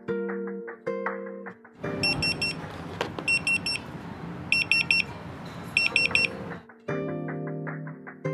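Restaurant guest pager going off to say the order is ready: quick triple beeps repeating four times, a little over a second apart, over a vibrating buzz that lasts about five seconds.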